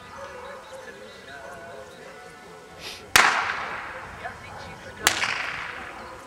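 Two gunshots, most likely from a blank pistol, about two seconds apart, each a sharp crack with a long echoing tail, the first the louder. They are the gunfire test fired during heelwork in a working-dog obedience routine.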